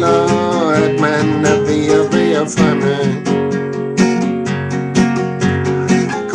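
Strummed acoustic guitar accompaniment, with a man's voice wavering over it in places.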